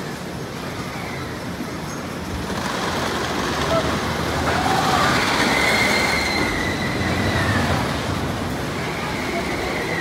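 GCI wooden roller coaster train running over its wooden track: a rumble that builds about two and a half seconds in and is loudest midway, with a high wheel squeal on top, then eases off.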